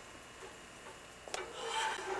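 A quiet stretch, then a small click and a short rasping scrape beginning about a second and a half in.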